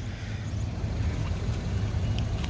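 Low, unsteady rumble of wind buffeting the microphone outdoors.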